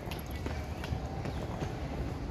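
Footsteps on a stone-paved path, a few faint irregular steps over a low rumble of wind and movement on the microphone.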